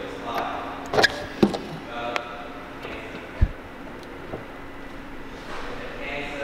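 Ferrari 458 Italia door being opened by its handle: a few sharp clicks and knocks from the handle and latch about a second in, and a low thud about three and a half seconds in as the door swings out.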